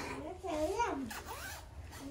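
A track jacket's zipper being pulled up from the hem to the collar, a short zip about a second in. A voice can be heard wordlessly vocalising alongside it.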